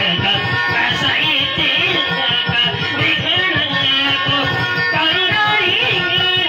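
Live music from several acoustic guitars strummed in a steady rhythm.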